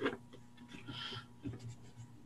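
A pen and hand handling drawing paper: a light tap, then small scratchy touches on the sheet, with a brief faint high tone about a second in.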